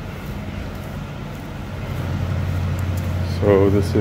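Steady low hum of background machinery with a light hiss. A short voiced sound from a man comes about three and a half seconds in, and again at the very end.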